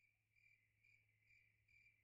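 Near silence after the song ends, with a very faint high-pitched tone pulsing about twice a second.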